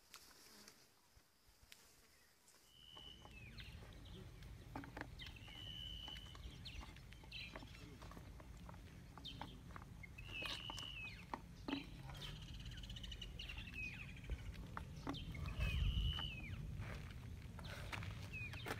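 A bird repeating a short high whistle that drops at the end, every two to three seconds, over a steady low rumble, with scattered light knocks.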